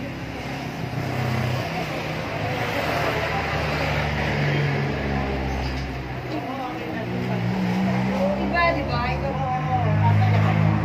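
A motor vehicle engine running by the road, its steady low hum swelling and easing, with people's voices talking in the background.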